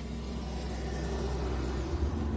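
Car engine running, heard from inside the cabin as a steady low hum.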